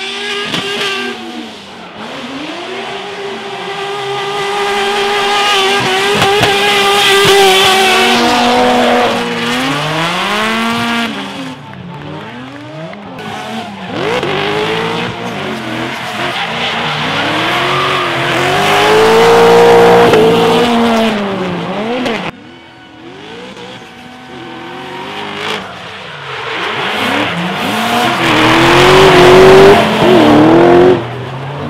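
Drift cars' engines revving hard, their pitch climbing and falling again every second or two as they slide through the corners, over the hiss and squeal of spinning tyres.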